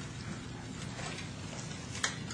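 Faint rustling with small clicks over a steady hiss: the pages of a Bible being turned.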